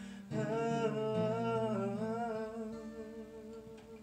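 Male voice humming a wordless melody over a softly played acoustic guitar, the long held notes wavering with vibrato. The voice eases off in the second half while the guitar rings on.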